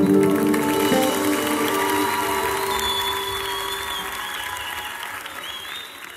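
Concert audience applauding as the band's final guitar chord rings out and dies away; the whole sound fades steadily down.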